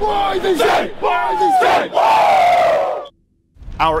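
Football players huddled together shouting a pump-up chant, a few loud shouted phrases, the last one long and falling in pitch, cut off suddenly about three seconds in.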